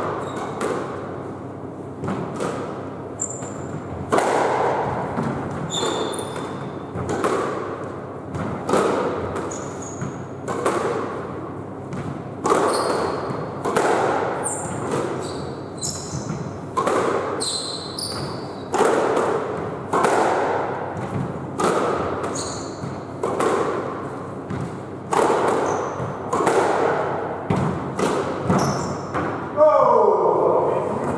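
A continuous squash rally: the ball is struck by rackets and rebounds off the court walls about once a second, each hit ringing in the echoing court. Court shoes squeak briefly on the wooden floor between hits.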